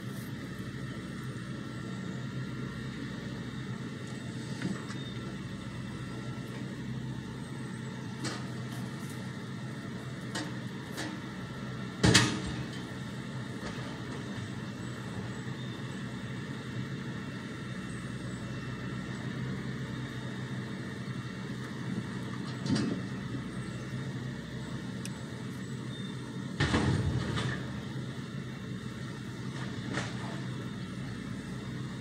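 A railroad tie-unloading machine running steadily, with a few heavy clunks as used ties are handled. The loudest clunk comes about a third of the way in, a smaller one later, and a longer clatter near the end.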